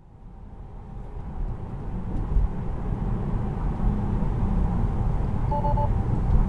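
Tyre and road noise inside the cabin of a 2019 Tesla Model 3, a low rumble that fades up over the first couple of seconds and then holds steady. Near the end comes a short two-note alert chime from the car, warning that Full Self-Driving may be degraded.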